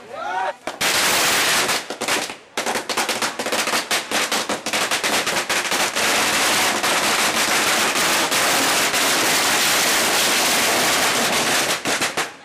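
Strings of firecrackers going off in a dense, continuous crackle of rapid bangs, easing briefly about two seconds in and then running on unbroken.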